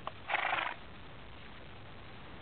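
A quarter horse gives one short snort through its nose, a horse's reaction to a wasp sting on its nose, just after a faint click.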